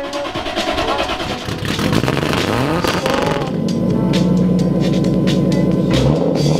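Toyota 2JZ-GTE 3.0-litre inline-six with a single BorgWarner EFR7670 turbo, in a Nissan S14, revving with a rising pitch about two to three seconds in, then running at a steady, even note.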